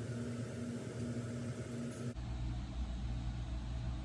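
Steady low machine hum, its tone changing abruptly about halfway through.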